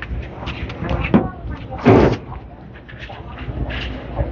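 Candlepin bowling alley background: people talking on the lanes over a steady low hum, with one loud, short clatter about two seconds in.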